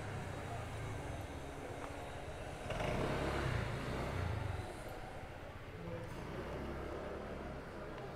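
City street ambience with a low steady rumble of traffic. A motor vehicle passes, loudest from about three to four and a half seconds in.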